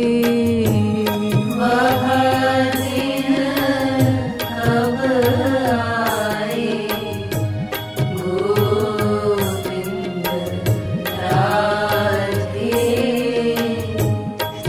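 Hindi devotional song (bhajan): a voice singing a chant-like melody over steady held accompaniment tones and frequent percussion strokes.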